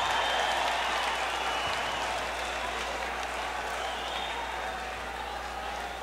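Rock concert audience cheering and applauding, with a few high whistles, slowly dying down.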